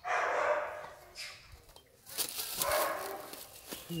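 Two loud, rough animal calls, each about a second long, the second starting about two seconds after the first.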